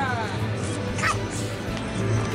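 Background music under a steady low hum. A voice trails off at the start, and a short high cry is heard about a second in.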